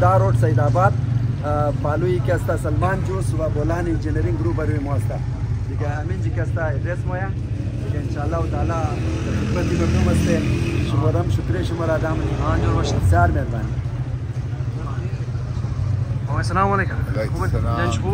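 A man speaking over a steady low rumble of street traffic.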